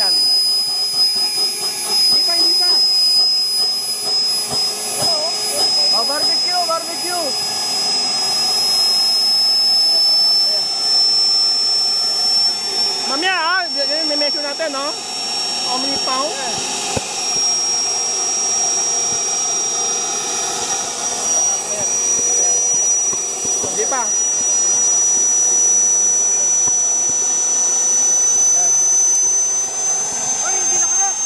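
Small model jet turbine of a radio-controlled BAE Hawk running on its first run, a loud steady high-pitched whine over a rushing roar that creeps slowly up in pitch.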